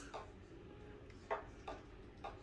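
Low room tone with two faint short clicks about a second and a half in, a little under half a second apart.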